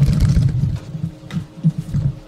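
Handling noise from a video camera being turned and repositioned: an uneven low rumble with scattered knocks on the microphone, louder than the voice around it.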